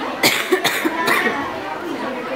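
Chatter of schoolgirls in a classroom, broken by three short, sharp bursts of noise within the first second or so.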